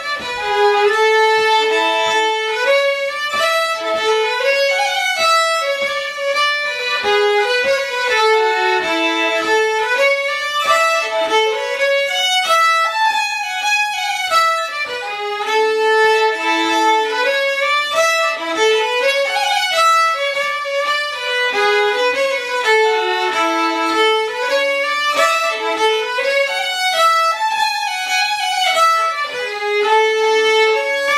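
Two fiddles playing a Swedish folk polska together, a melody of many quick bowed notes.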